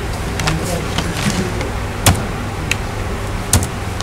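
Steady low background hum with a few short, sharp clicks scattered through it, two of them close together near the end.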